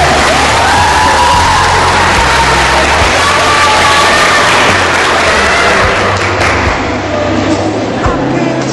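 Audience cheering and applauding over background music with a steady bass line.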